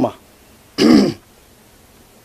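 A man clears his throat once, a short rasp about a second in.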